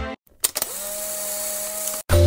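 A steady machine-like hum with a high hiss, starting about half a second in after a brief silence, its pitch rising slightly at first like a small electric motor spinning up, then holding steady until it cuts off at the end.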